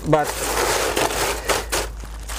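Ice cubes pouring from a plastic bag into a disposable aluminium foil pan, rattling and crackling against the foil and each other, with the bag crinkling and a few sharp clicks in the second half.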